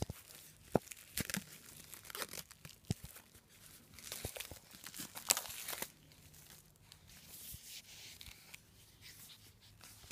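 Clear plastic packaging crinkling and tearing as it is pulled open by hand, in irregular crackles that thin out in the second half.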